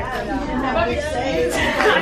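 Speech only: several people talking over one another in a classroom.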